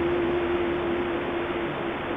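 Wind rushing over the microphone, with the last held note of a guitar music track fading away near the end.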